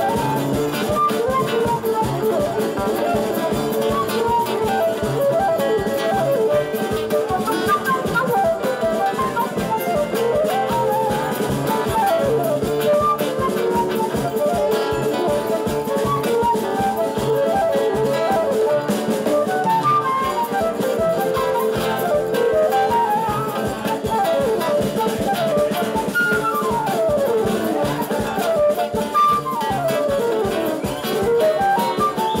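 Live instrumental band music: a flute playing the melody in quick rising and falling runs over acoustic guitar, cavaquinho and drum kit, with a saxophone joining partway through.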